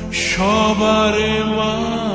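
Devotional chanting with music: a held, chanted vocal note that slides up into a new note about half a second in, over a steady low drone, with a brief bright hiss at the start.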